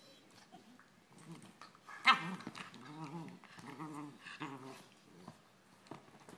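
Two Labrador puppies play-fighting, giving a string of short pitched growls and yips, the loudest a sharp one about two seconds in.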